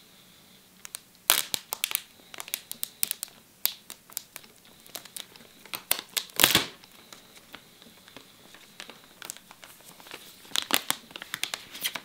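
Clear plastic film crinkling and tearing as it is peeled off a cardboard iPhone box, in irregular sharp crackles. They are loudest about a second in, around the middle, and near the end.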